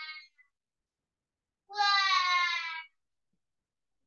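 A cat meowing: the tail of one drawn-out meow at the start, then a louder, longer meow with a slightly falling pitch about two seconds in.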